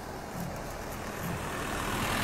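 A truck driving past on the road, its engine and tyre noise growing steadily louder as it nears.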